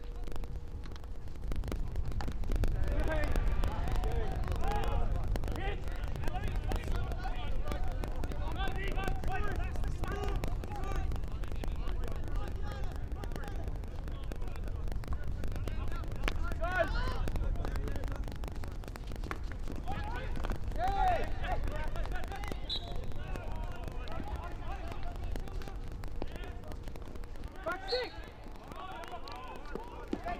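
Field hockey players shouting and calling to one another during play, over a steady low rumble, with a few sharp knocks.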